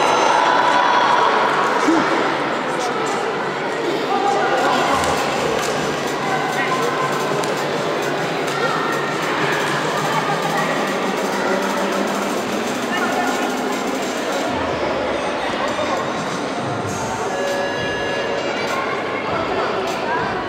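Many voices talking at once in a large sports hall, a steady echoing murmur of spectators and officials.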